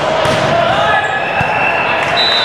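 Sneakers squeaking on a wooden gym floor as players move, with a couple of short thuds, echoing in a large hall.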